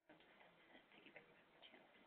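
Near silence: faint room tone with a very faint murmur of voices in the background.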